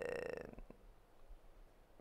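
A woman's drawn-out, creaky hesitation sound, "eee", trailing off about half a second in, followed by near silence.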